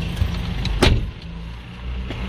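Car engine idling, heard from inside the cabin, with one sharp click a little under a second in.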